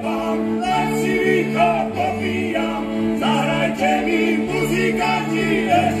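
Terchová folk band: several men singing together in harmony over sustained fiddle chords, with a double bass alternating between two low notes.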